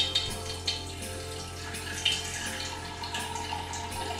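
Hydrogen peroxide being poured gently from a measuring cup into a tall glass jar: a steady trickle of liquid with a few small clinks.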